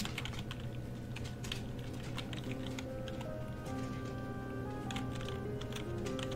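Typing on a computer keyboard, a scattered run of key clicks, over quiet background music with held notes.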